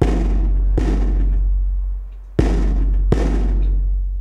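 A large hide-headed drum, its skin with the hair left on, struck with a wooden stick: four deep, ringing beats in two pairs, each pair a second and a half apart, every beat fading slowly.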